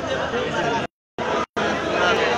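Several bystanders talking at once in loud, overlapping chatter. The sound drops out abruptly to dead silence twice around the middle.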